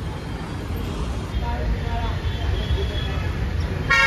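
Busy city street traffic: a steady low rumble of engines, with auto-rickshaws among the vehicles.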